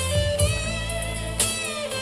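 Live electric guitar and keyboard playing an instrumental passage, with no singing. A fresh chord is struck about once a second over a sustained low bass line.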